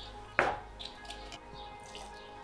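A single short knock or clack about half a second in, from the bottle and pot being handled, against faint steady background music.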